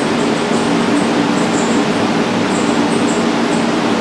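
Steady hiss with a low hum underneath, unchanging throughout, with no distinct event standing out.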